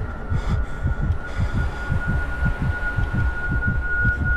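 Heartbeat sound effect in a film soundtrack: fast, low thumps over a steady high-pitched tone.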